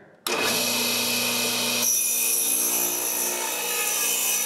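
Radial arm saw with a thin fret-slotting blade running and cutting the nut slot across an ebony guitar fretboard. It starts suddenly just after the start and turns hissier about halfway through as the cut goes on.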